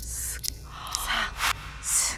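Startled gasps: several breathy, sharp intakes of breath in shocked reaction, over a steady low background hum.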